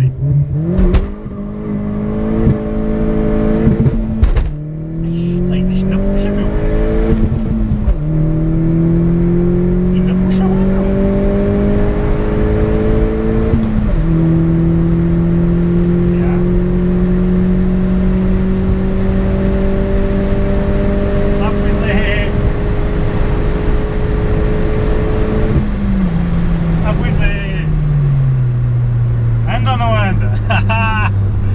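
Opel Corsa OPC's turbocharged 1.6 four-cylinder, heard from inside the cabin, under full-throttle acceleration from a standing start. It climbs in pitch through three gears, each cut by a quick upshift, then rises slowly in the next gear until the throttle is lifted near the end and the revs fall away.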